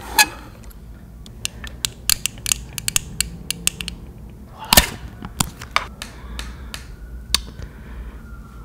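Clear plastic tape dispensers handled and tapped close to the microphone: an irregular run of sharp plastic clicks and taps, with a louder knock a little past halfway.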